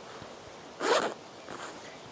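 One short zip, about a second in, as a zipper on a haversack is pulled open.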